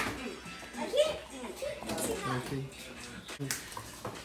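Child's voice talking over background music, with a short knock about three and a half seconds in.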